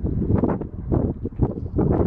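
Wind buffeting a handheld camera's microphone in uneven gusts, a low rumbling noise that surges and drops several times.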